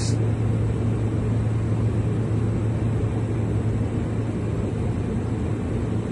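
Steady low rumble with a constant low hum and no other events.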